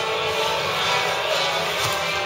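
Background rock music with guitar, running at a steady level.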